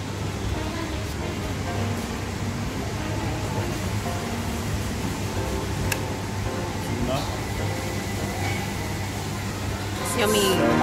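Buffet restaurant ambience: indistinct chatter of other diners over a steady low hum, with one sharp click about six seconds in.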